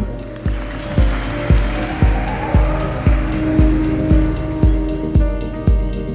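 Background music with a steady low kick-drum beat, about two beats a second. A hissing wash sits over it for the first few seconds and fades, and sustained higher tones join about five seconds in.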